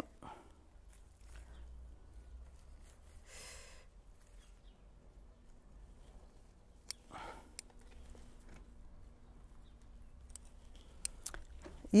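Faint, sparse snips of bonsai scissors cutting the leaf stalks of a Japanese maple, with soft rustling of the leaves between cuts; a few clicks come close together near the end.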